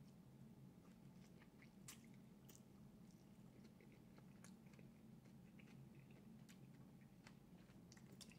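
Faint chewing of a soft chicken taco: scattered small, wet mouth clicks over a low steady hum.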